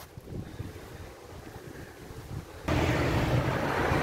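Wind noise on a handheld phone's microphone outdoors. About two and a half seconds in it jumps abruptly to a louder, steady rush of wind and road traffic.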